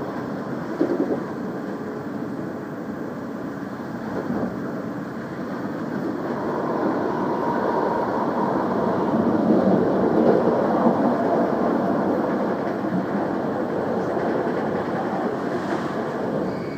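Steady rumble of a moving vehicle, swelling from about six seconds in and holding loud through the rest.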